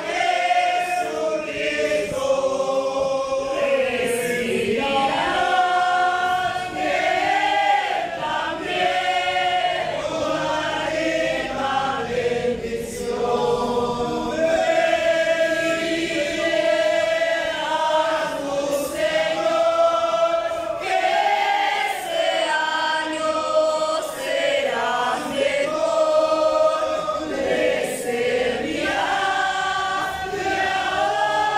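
Congregation of men and women singing together, a worship song sung in long held notes.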